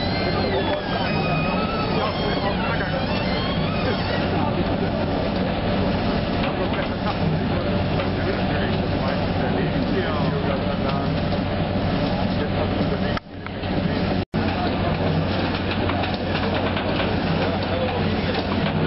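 Sugar beet washing machine running with a steady drone, with people chattering around it. The sound cuts out briefly twice about two-thirds of the way through.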